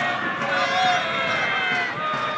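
Several voices calling and shouting at once across an open football pitch, drawn-out calls overlapping one another, as players and spectators react to an attack in progress.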